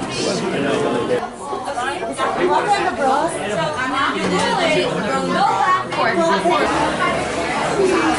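Overlapping chatter of many voices in a busy restaurant, no single speaker standing out.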